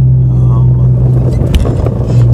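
Steady low drone of an idling vehicle engine, with faint voices over it and a sharp knock about one and a half seconds in.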